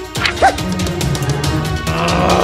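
Background music for an animated cartoon, with a short high yelp-like cry that rises and falls in pitch about half a second in.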